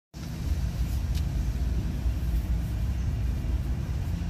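Steady low rumble of a parked car with its engine idling, heard from inside the cabin.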